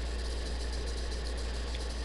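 Steady low hum with an even hiss over it, the recording's background noise in a pause with no voice.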